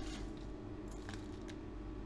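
Metal spoon scooping impure silver granules from a plastic tub: a few faint, scattered clinks of the metal pieces, over a steady low hum.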